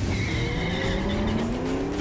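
Car engine revving, its pitch climbing steadily, with a tyre squeal near the start. It is a title-card sound effect rather than a recorded drive.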